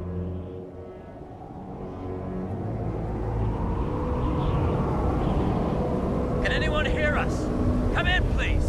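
Spacecraft flight sound effect: a low, rushing rumble of engines and wind that swells over the first few seconds and then holds steady.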